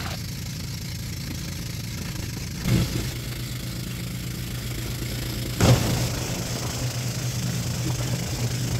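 Engine of a motorized bangka outrigger boat running steadily while under way, a low even hum, with two short louder moments a few seconds apart.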